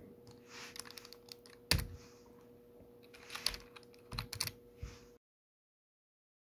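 Computer keyboard keys typed in irregular taps, one louder key strike a little under two seconds in, over a faint steady hum. The sound cuts off abruptly to dead silence about five seconds in.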